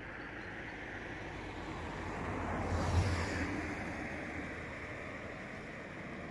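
A vehicle passing on the road, its sound building to a peak about three seconds in and then fading, over steady wind noise on the microphone.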